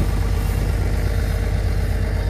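Farm tractor engine running steadily as it pulls a chisel plow over sod, a low even drone.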